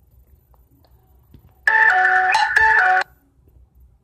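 A mobile phone's melodic ringtone: a loud, short tune of a few stepped notes that starts about a second and a half in and cuts off suddenly after about a second and a half.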